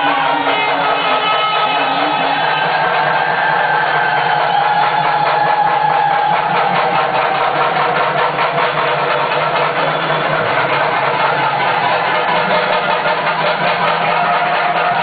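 Loud ceremonial music: a long, slowly wavering melody line over a dense, rapid, steady beat.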